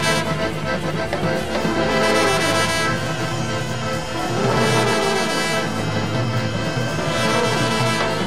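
Live brass band music: horns playing together over drums, with cymbal crashes swelling every couple of seconds.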